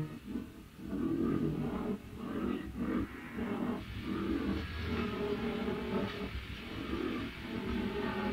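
Experimental ambient cassette track: a held drone cuts off right at the start, giving way to a rough, low rumbling texture that swells and dips unevenly.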